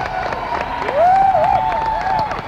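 Rock concert audience cheering and applauding, with one loud, drawn-out, wavering whoop from a single voice starting about a second in.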